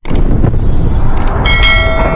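Edited intro sound effect: a loud rushing noise with a heavy low rumble, joined about one and a half seconds in by steady ringing, chime-like tones.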